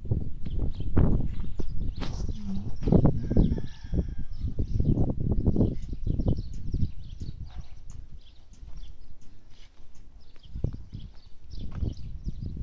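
Wind buffeting the microphone in irregular low gusts, easing after about seven seconds, with small birds chirping.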